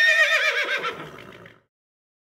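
A horse whinnying: one long call that starts high with a quavering pitch, falls, and fades out about a second and a half in.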